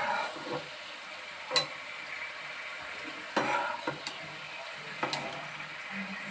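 Potato and cauliflower pieces frying with a steady sizzle in a frying pan while a steel spatula stirs them, giving a few sharp scrapes against the pan.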